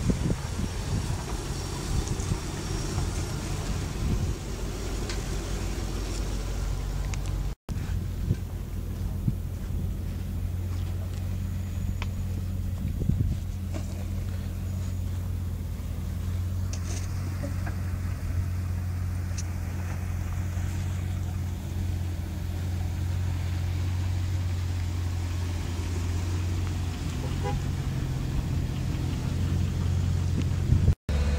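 Land Rover Discovery engine running steadily at low revs as the 4x4 crawls a rutted dirt trail, with a brief dropout about a quarter of the way through and a slight rise in the engine note near the end.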